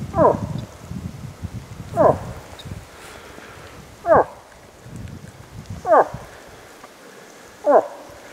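Moose calling: five short grunts that fall in pitch, one about every two seconds, over the rustle of footsteps through dry grass and brush.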